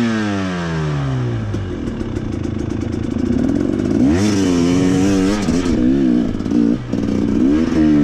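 Dirt bike engine under the rider: revs falling away at first, then low steady running for a couple of seconds. From about four seconds in, the throttle is opened and closed in repeated short bursts, pitch rising and falling.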